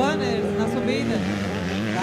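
Two-stroke 85cc motocross bikes running on the track. There is a sharp rise in engine pitch at the start as a bike revs up, then wavering engine notes as the riders accelerate and shift.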